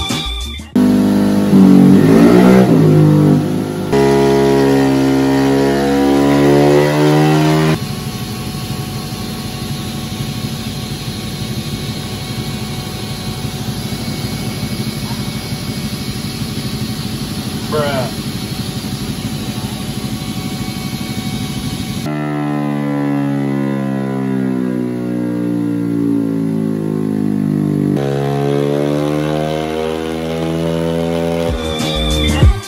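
Bored-up Honda Vario 125 scooter engine revving on a dynamometer: the pitch sweeps up and holds high for several seconds, drops to a rapid low rumble, then rises and falls again in the last seconds.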